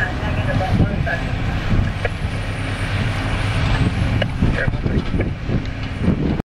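Diesel engine of a Prentice knuckleboom log loader running steadily under load as the boom swings a grapple of tree-length logs, with a few brief sharp knocks.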